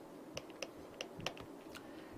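Faint, irregular light clicks, about ten in two seconds, of a stylus tapping and drawing on a pen tablet as marks are added to the slide.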